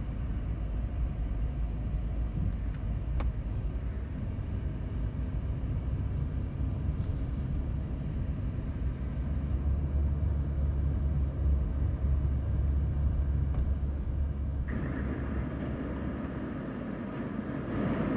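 A steady low outdoor rumble that swells toward the middle, then eases near the end as a lighter hiss takes over.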